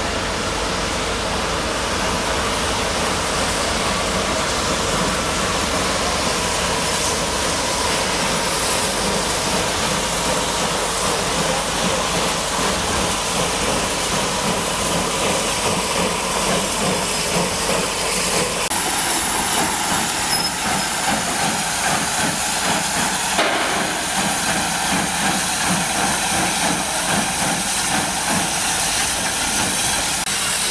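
Steam locomotive 34052 Lord Dowding, a Bulleid Battle of Britain class Pacific, rolling slowly tender-first through a station with a steady hiss of steam, which grows stronger a little past halfway as it draws close.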